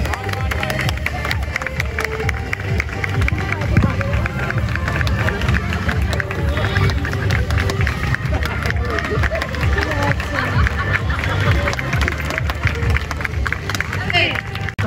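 Background music playing over the babble of a crowd of children and spectators on an open field.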